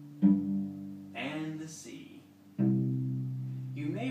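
Cello open strings plucked one at a time, each note ringing and dying away: the G string about a quarter second in, then the lower C string about two and a half seconds in, with a short spoken word between them.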